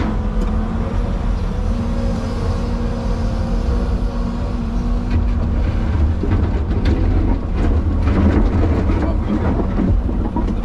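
Excavator diesel engine and hydraulics running under load, heard from inside the cab, with a steady whine over the low rumble for the first six seconds or so. After that, concrete chunks knock and scrape against the bucket as it digs into a pile of broken slabs.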